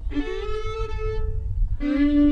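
Fiddle bowing two long held notes, the second starting near the end, with a low wind rumble on the microphone underneath.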